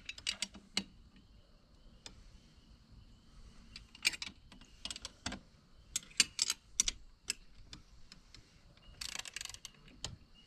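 Hand ratchet wrench clicking as it tightens a bolt on a boat seat's mounting bracket: several short runs of quick clicks with pauses between them.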